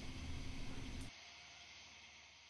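Faint steady background hiss with a low hum that cuts off suddenly about a second in, leaving a fainter hiss that fades away.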